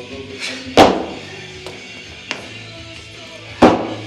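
Feet landing on a wooden plyometric box during box jumps: two loud thuds about three seconds apart, about a second in and near the end, with a lighter knock between them. Background music plays throughout.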